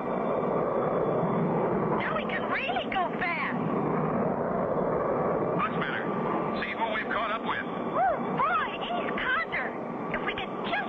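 Steady rushing jet-engine sound effect of a cartoon jet plane in flight, with voice-like sounds over it at about two to three seconds in and again from about six to nine and a half seconds.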